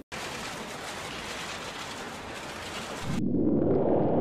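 A steady hiss of noise for about three seconds. Then a louder, muffled, bass-heavy sound cuts in sharply with no treble, as from an old recording.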